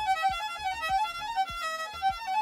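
Violin played from sheet music: a quick run of short, separate high notes, about four or five a second, with soft low thuds keeping a rough beat underneath.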